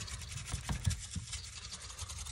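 Stiff-bristled chip brush scrubbing quickly back and forth over the painted parts of a prop control panel during dry-brushing, a dense run of short scratchy strokes.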